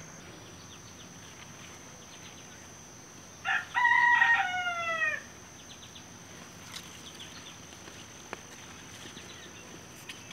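A rooster crowing once, about three and a half seconds in: a short opening note, then a longer drawn-out note that falls in pitch at the end.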